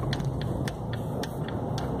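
Car driving slowly, heard from inside the cabin: a steady low engine hum and road noise, with a few light clicks.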